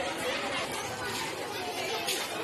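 Indistinct chatter of several people talking at once, a steady background hubbub with no one voice standing out.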